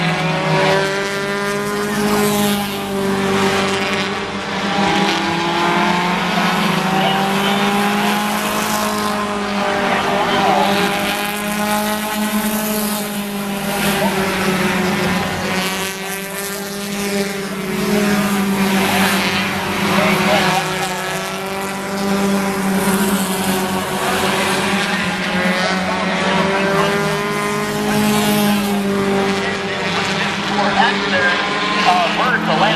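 Four-cylinder stock cars racing around an oval, several engines at once, their pitch rising and falling again and again as the drivers accelerate down the straights and lift for the turns.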